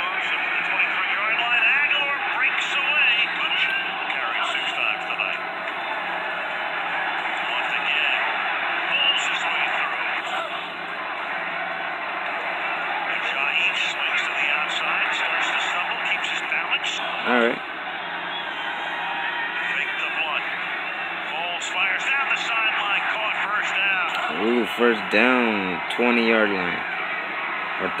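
A televised American football broadcast playing through a TV speaker: a steady stadium crowd roar under play-by-play commentary, with a louder voice near the end.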